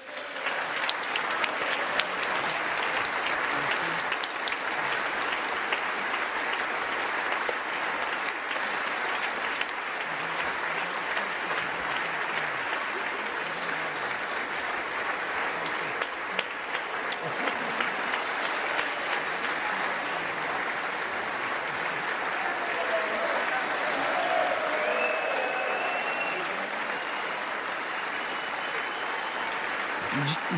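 Sustained applause from a large audience of legislators filling a big chamber. It breaks out abruptly at the end of a speech and holds at a steady level throughout.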